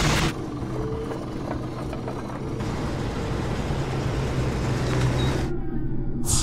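Cartoon sound effect of a car engine running steadily, a low rumble with a hum. It opens with a short whoosh, and a hiss builds from about halfway in and cuts off suddenly near the end.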